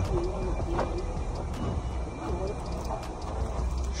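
Faint distant voices over a steady low rumble.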